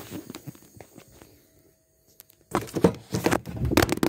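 Phone microphone handling noise: a few light clicks, then, about two and a half seconds in, a loud stretch of rubbing and scraping as the phone is gripped and fingers cover it.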